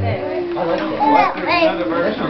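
Young children's high voices chattering and squealing without clear words. A held organ chord cuts off just as it begins.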